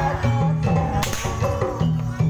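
A performer's long whip cracking once, sharp and loud, about a second in, over ongoing accompanying ensemble music.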